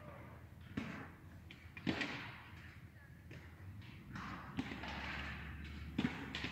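A few faint, scattered knocks and taps, about four over several seconds, over a quiet background hush.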